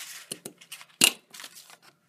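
Handheld paper circle punch snapping through black cardstock: one sharp loud click about a second in, with lighter clicks and paper-handling noise around it.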